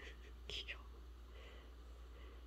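Faint room tone with a low steady hum, broken by a brief soft whisper about half a second in.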